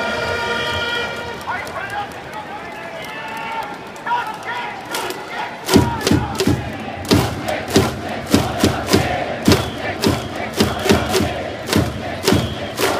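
A Japanese baseball cheering section: trumpets hold the last note of a fanfare, then the crowd cheers. About six seconds in, drums start beating about twice a second and the fans chant along as the batter's cheer song begins.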